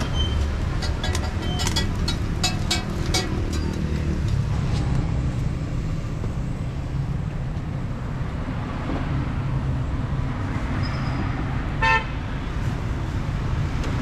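Steady street-traffic rumble, with one short car-horn toot near the end. In the first few seconds comes a run of sharp metallic clicks: steel tongs tapping on the flat iron paratha griddle.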